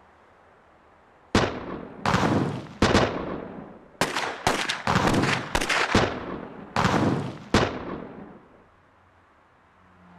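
Gunshots: about ten sharp shots spread over some six seconds, irregularly spaced, each followed by a long echoing tail, starting a little over a second in and dying away before the end.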